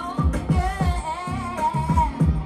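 A woman singing into a microphone over a dancehall beat, with a wavering vocal melody above bass hits about four times a second, played loud through the stage sound system.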